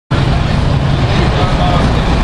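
Loud city street noise: a steady low rumble of traffic, with faint voices of passers-by in the background.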